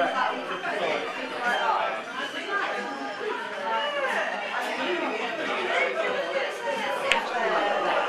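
Several people talking at once, indistinct overlapping chatter. A single sharp click sounds about seven seconds in.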